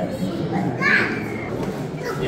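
Children talking amid background chatter, with a higher child's voice standing out about a second in.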